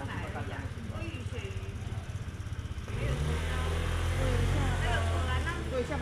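Chatter of several voices, with a motor vehicle's engine running close by: about three seconds in a low steady engine drone swells in with a brief rise in pitch and becomes the loudest sound.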